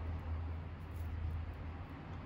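A steady low hum with faint background hiss, with no distinct event.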